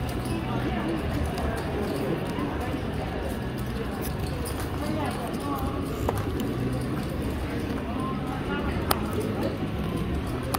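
Poker-room background: indistinct chatter of many voices over a steady low hum, with two sharp clicks, one about six seconds in and one near the end.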